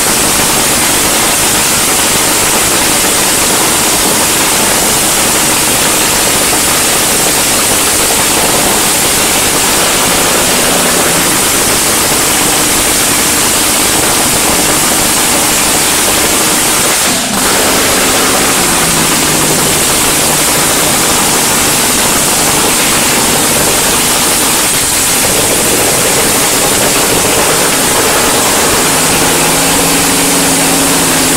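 Nitro-fuelled front-engine dragster engine running at a static fire-up, so loud that the recording is a dense, distorted wall of noise; its pitch shifts in steps a few times, with a brief dip about 17 seconds in.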